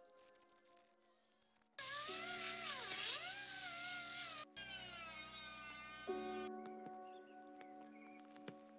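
A welder buzzing and crackling in two runs over background music. The first starts about two seconds in, there is a brief break, and the second stops about two seconds later.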